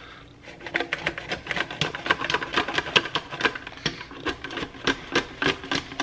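Plastic guillotine bagel slicer's blade being worked through a seeded bagel: a rapid, irregular run of crunchy clicks and rasps begins about half a second in. The blade is mashing the soft bagel as much as cutting it.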